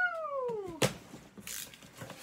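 A single long meow-like cry that falls steadily in pitch, followed a moment later by a sharp click and then scratchy rustling of a cardboard box being opened.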